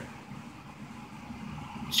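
A short pause in a man's speech, holding only a faint steady low background hum. His voice comes back right at the end.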